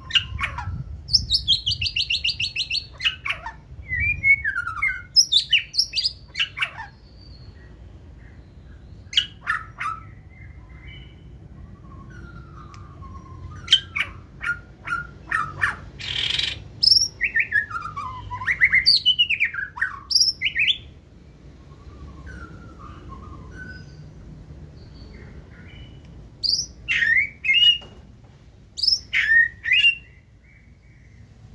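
White-rumped shama singing: bursts of varied whistled phrases, pitch glides and fast stuttering trills, separated by pauses of a few seconds, with one harsh rasping note about halfway through.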